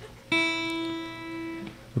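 A single guitar note is plucked about a third of a second in and rings steadily for about a second and a half, then is cut off.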